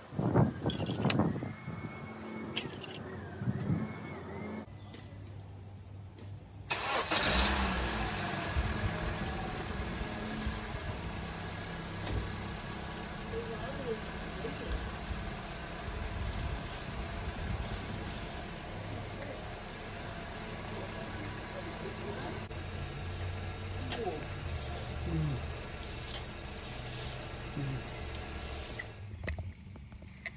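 Honda Civic 1.8-litre four-cylinder engine starting about seven seconds in, then idling steadily.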